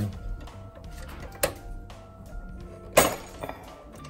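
A circuit breaker clicking as it is pressed into a breaker panel: a light click about a second and a half in and a louder, sharper click about three seconds in, over quiet background music.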